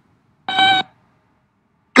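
A single short electronic beep at one steady pitch, lasting under half a second, about half a second in.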